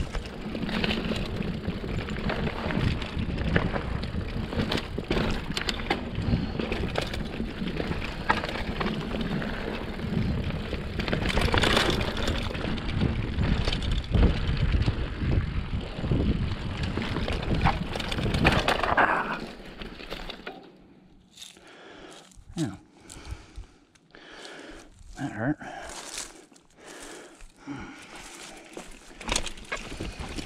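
Mountain bike riding down a dirt singletrack: a loud steady rush of wind on the microphone mixed with tyre noise and the bike's rattling. About two-thirds through it suddenly gets much quieter, leaving scattered clicks and rattles from the bike.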